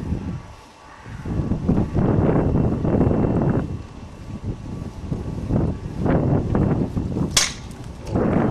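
A single sharp rifle shot about seven seconds in, over muffled rumbling noise.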